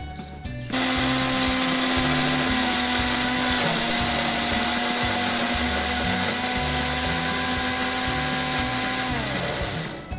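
Bosch TrueMixx mixer grinder blending a berry smoothie: the motor starts suddenly about a second in, runs at a steady high whine, then spins down with falling pitch near the end.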